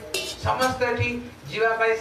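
Light metallic clinking, a few sharp strikes, over a voice.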